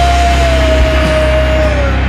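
Heavy stoner rock playing: a full band with heavy bass, and one long high note held over it that bends down in pitch and stops shortly before the end.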